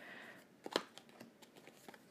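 Tarot cards being handled and laid down on a cloth-covered table: a few light clicks and taps, the loudest a little under a second in.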